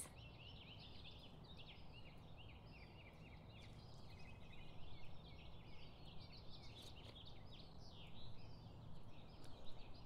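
Faint chorus of small birds chirping and twittering, many quick overlapping calls, over a low steady hum.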